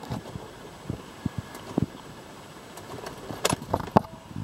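Scattered light clicks and knocks inside a parked car with its engine not running, a few close together near the end, typical of a camera being handled and moved.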